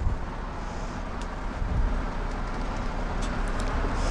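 Steady low rumble and hiss of background noise, with a few faint clicks.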